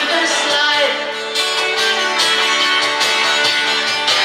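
Live acoustic band playing an instrumental passage: two acoustic guitars strumming and picking chords, with a cajon tapping a steady beat. A sung note tails off just at the start.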